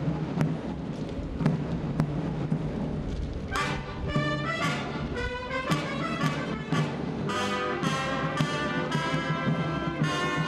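Military marching band striking up a march for the march past: drum beats first, then the brass comes in about three and a half seconds in, playing sustained notes over the beat.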